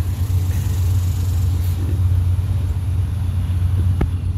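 Vehicle engine idling with a steady low hum.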